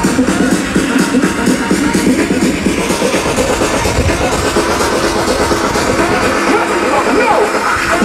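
Electronic dance music from a live DJ set, played loud over a large sound system, with a steady beat.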